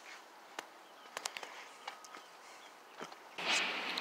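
Faint, irregular sharp clicks and taps over a quiet outdoor background, with a short faint tone a little before halfway. A rush of noise rises near the end.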